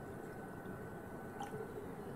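Water being poured faintly from a cup into a plastic bottle, with a light click about a second and a half in.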